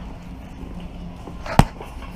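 A single sharp knock about one and a half seconds in, with a brief ring after it, over a steady low background hum.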